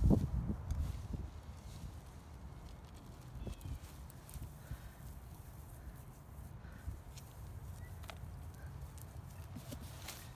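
Crustacean meal sprinkled by hand onto potting soil in a plastic container, giving a faint patter and a few light ticks over a low, uneven rumble.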